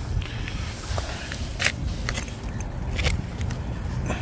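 Handling noise from a small plastic folding drone being picked up and turned in the hands: a few sharp clicks and scrapes, about a second in, at a second and a half and at three seconds, over a steady low rumble.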